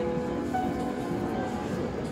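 Upright piano: a chord rings on and fades, and softer notes are played over it from about half a second in.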